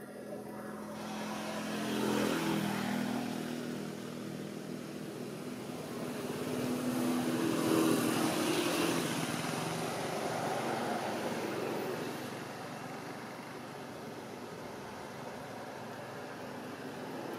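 Motor vehicles passing by: an engine hum swells and fades twice, the second pass longer and louder, over a steady background hiss.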